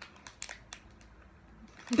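Plastic candy wrapper handled between the fingers, giving a few faint, sharp crinkles and ticks.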